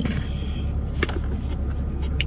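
Steady low hum inside a parked car's cabin, with a single light click about a second in from the plastic takeout container and utensils being handled.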